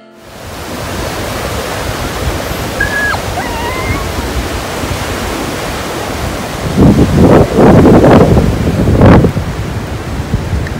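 Sea surf breaking steadily on a beach, with wind buffeting the microphone in loud irregular gusts from about seven seconds in.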